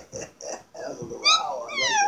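Puppy trying to howl: soft grunting pulses, then a short rising-and-falling yelp about a second in and a long call sliding down in pitch near the end.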